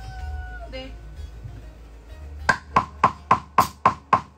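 A short held note right at the start, then a regular count-in of sharp clicks, about four a second, beginning a little past halfway through, leading a rock band into a song.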